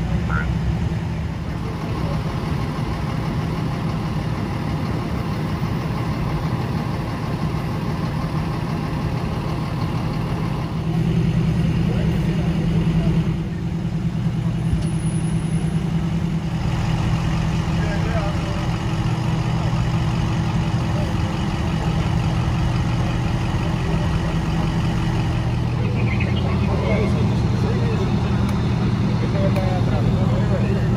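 Steady low hum of idling engines, louder for a couple of seconds about eleven seconds in, with faint voices in the background.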